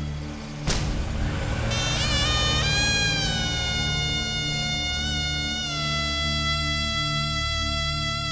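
Background music score: a held melody line that slides between notes, over a pulsing bass. A single sharp hit comes just under a second in.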